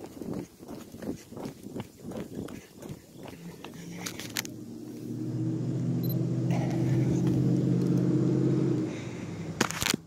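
Whelen WPS-2803 electronic outdoor warning siren sounding a steady tone during a test, faint at first, swelling from about five seconds in and cutting off suddenly near the end. Footsteps and phone handling noise in the first few seconds.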